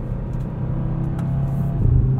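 Audi RS 3's 2.5-litre turbocharged inline-five running under light load, a steady drone heard from inside the cabin, growing louder near the end as the throttle opens and the car picks up speed.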